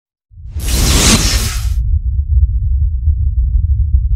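Cinematic trailer sound effect: a loud whoosh sweeps in about half a second in and dies away after about a second, over a deep low rumble that starts with it and holds steadily beneath.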